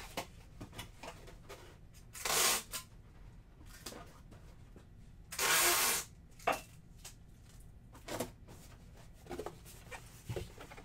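Packing tape pulled off the roll twice while taping a cardboard shipping box: two short ripping rasps, about three seconds apart, the second a little longer. Light knocks and rustles of the cardboard being handled come between them.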